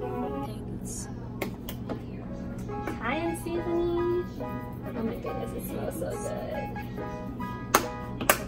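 Background music, with a voice in places and a few sharp clicks, the loudest just before the end.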